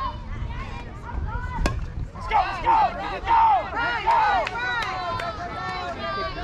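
Children shouting and calling out in high voices, loudest a little after the middle. Just before the shouting starts there is a single sharp crack.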